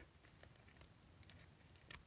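Near silence broken by a few faint, small clicks: side cutters nibbling at the metal end cap of a small glass LED lamp.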